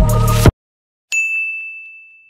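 Loud electronic music cuts off abruptly, and after a short silence a single high bell-like ding sounds and rings out, fading away.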